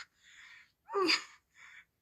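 A person's voice exclaiming a single drawn-out 'ooh' that falls in pitch about a second in, with soft breathy sounds just before and after it.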